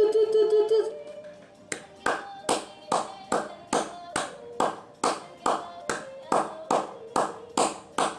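A girl's yodelling singing breaks off about a second in. Then hands clap a steady beat, a little over two claps a second.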